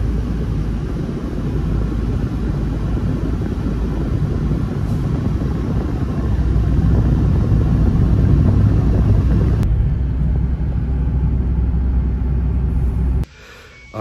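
Steady low rumble of road and engine noise heard from inside a moving car's cabin, swelling slightly partway through and cutting off suddenly near the end.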